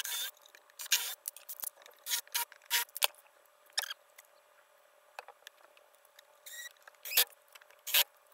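Cordless drill/driver driving wood screws into a plywood cabinet box in short bursts with brief squeals. There is a pause in the middle, when the drill is set down.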